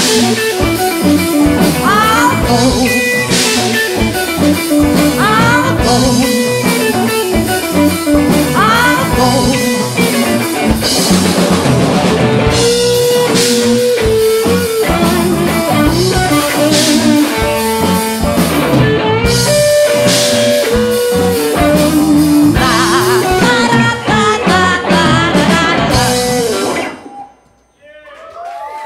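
Live band music with electric guitars over a drum kit, loud and continuous, stopping abruptly about a second before the end as the song finishes.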